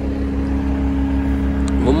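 Caterpillar 236D skid steer loader's diesel engine idling steadily, a constant low hum without revving.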